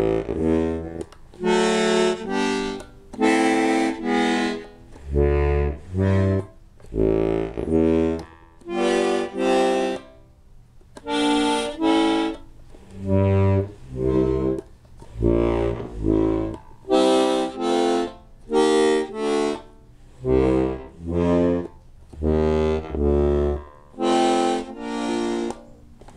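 Bass side of a button accordion played one button at a time: short separate notes with gaps between, deep single bass notes alternating with chords, roughly one sound a second.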